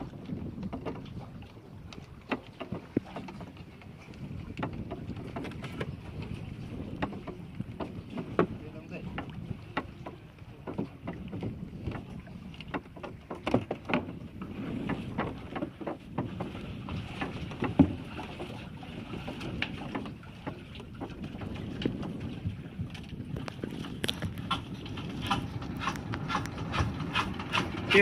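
Sea water slapping against the hull of a small wooden fishing boat, with wind on the microphone and scattered knocks and clicks from the boat, the sharpest knock about two-thirds of the way through.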